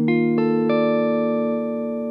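Electric guitar, a Gibson ES-335 semi-hollow played through a BECOS CompIQ Mini compressor pedal. A chord is picked one note at a time in the first second and then left ringing, slowly fading with long sustain.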